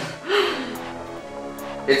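Background music with steady sustained notes, with a brief voice sound near the start and a few faint clicks.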